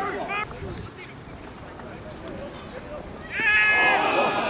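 A person's voice shouting: a short call at the start, then a long, high, held shout near the end, the loudest thing here.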